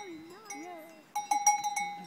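Small bell on a calf's collar clanking several times in quick succession from a little over a second in, each strike ringing briefly, as the calf moves its head.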